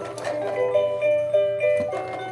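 A battery-powered musical toy sea turtle playing a simple electronic tune of chiming, xylophone-like notes, set off by pressing its light-up buttons.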